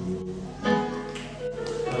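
Live gospel worship music with sustained instrumental and vocal notes and a few light percussive taps, in a short gap between the leader's sung lines.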